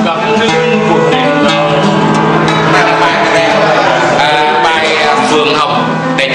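Music: nylon-string classical guitars played together over a steady held low note, with a voice joining in around the middle.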